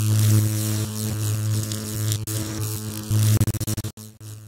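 Electric buzz sound effect: a steady low mains-type hum with crackling static over it. Near the end it flickers on and off rapidly, then cuts out.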